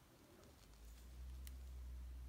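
Near silence: a faint steady low hum, with one faint click from the small plastic action figure's leg joint about a second and a half in.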